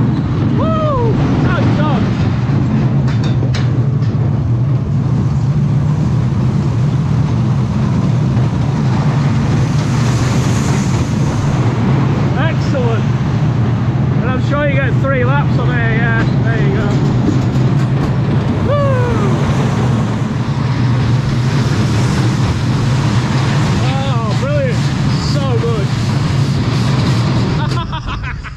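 Small dragon-themed family roller coaster train running on its steel track, a loud steady rumble of wheels and rushing air, with short high squeals rising and falling on and off. The rumble drops off suddenly at the very end as the train comes into the station.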